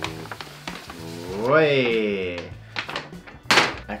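A paper shopping bag rustling, with a loud thunk about three and a half seconds in as the jeans are pulled out of it. Background music plays throughout, and a long wordless voice note rises and falls in the middle.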